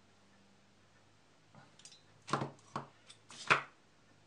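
A few short, sharp metal clicks and knocks, the loudest near the end, as a freshly reassembled aluminium platform bicycle pedal is rocked on its axle to check for play and a wrench is set down on the table. A little bearing play remains.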